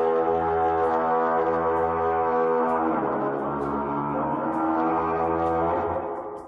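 Long, low horn blast as a sound effect: a deep sustained note that drops in pitch about three seconds in and fades out near the end.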